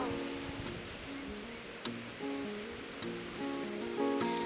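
Acoustic guitar playing alone, a slow picked figure of single notes that change about every half second, with three faint clicks from the strings.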